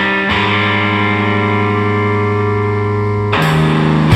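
Distorted electric guitar playing a song intro: a chord rings out for about three seconds, then a new, louder chord is struck near the end.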